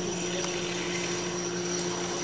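Tap water running steadily into a sink, with a steady hum underneath.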